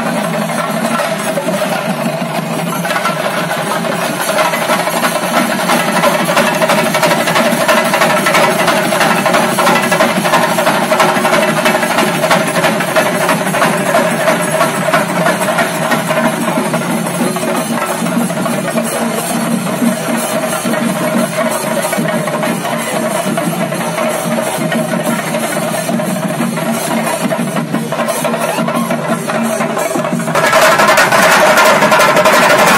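A group of chenda drums beaten with sticks in a fast, dense, unbroken roll, growing a little louder after the first few seconds.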